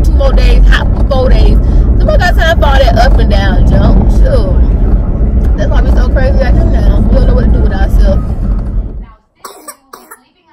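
A woman talking inside a car over a steady low hum; the sound cuts off suddenly about nine seconds in.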